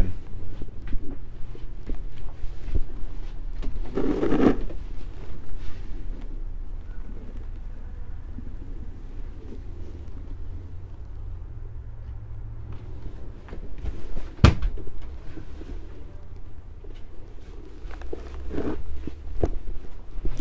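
Footsteps across a travel trailer's floor with handheld camera-handling noise and a low steady rumble. A short laugh comes about four seconds in, and a single sharp knock, the loudest sound, comes about two-thirds of the way through.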